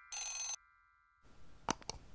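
Animation sound effects: a short, bright bell ring like a notification bell just after the start, over fading chime tones, then a faint hiss with two sharp mouse clicks near the end.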